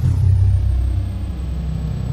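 End-screen outro sound: a loud, deep bass rumble that starts suddenly, with a thin high tone gliding down at its start.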